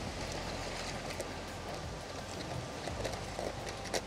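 Steady beach ambience: an even hiss of wind and distant surf, with a few faint clicks as the filter holder is fitted onto the camera.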